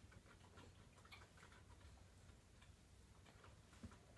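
Near silence: quiet room tone with faint, irregular small ticks, and one slightly louder tick near the end.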